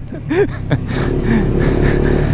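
Honda Grom's 125 cc single-cylinder four-stroke engine, on its stock exhaust, running at a low, steady speed as the bike rolls along. It settles into one even note about a second in.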